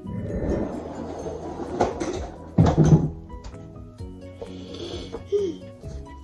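Background music over a person hawking up saliva in the throat and spitting into a DNA-test collection tube, with the loudest rasping burst about three seconds in.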